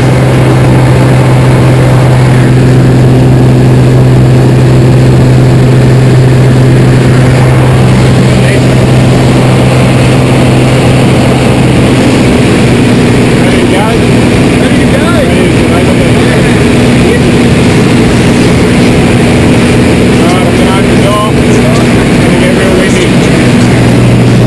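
Single-engine light aircraft's piston engine and propeller droning steadily at one pitch, heard from inside the cabin.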